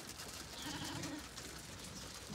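A faint, short, low animal call lasting about half a second, a little under a second in, over quiet outdoor background.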